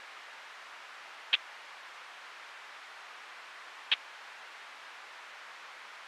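Steady hiss of camcorder recording noise on a blacked-out stretch of tape, with two short sharp clicks, one just over a second in and one near four seconds.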